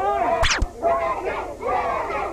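A group of people singing loudly together, many voices at once, with two sharp cracks close together about half a second in.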